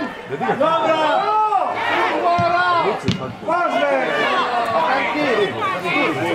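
Several voices on a football pitch calling out over one another, with one sharp knock about three seconds in.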